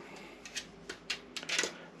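A handful of faint, light clicks of hard plastic: 3D-printed sail-track strips being handled and shifted on a printer bed.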